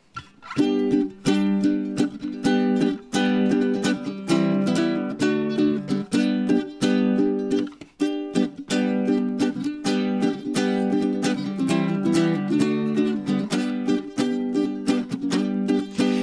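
Ukulele strummed in a steady rhythm, its chords changing every few seconds, starting about half a second in: the solo instrumental intro to a song, before any singing.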